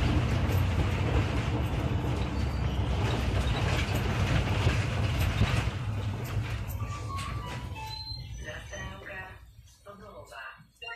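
Interior of a SOR NB 18 City diesel bus: a steady low engine and road rumble that dies away over the last few seconds as the bus slows. About seven seconds in, a short chime of tones stepping down in pitch sounds, followed by a voice, typical of a stop announcement.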